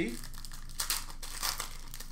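Foil wrapper of a hockey card pack crinkling in the hands as it is opened, a quick run of crackles that begins just after the start.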